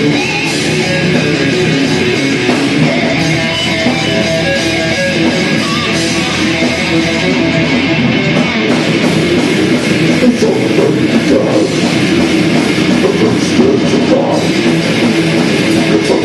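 Metal band playing live: heavily distorted electric guitar with electric bass and a drum kit, loud and continuous.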